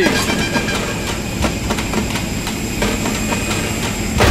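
Steady noise of a jet airliner on the ground, a running roar with a faint high whine over it.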